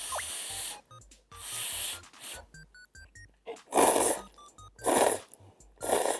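Ramen-style noodles slurped from a bowl of broth in about five long slurps, the last three loudest, over light background music.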